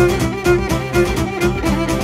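Instrumental Cretan dance music: a violin carries the melody of a pidichtos, a leaping dance, over laouto accompaniment, with a steady beat about twice a second.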